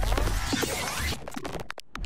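Electronic logo-animation sting: a glitchy, scratching sound effect over music, with a sudden brief cutout near the end.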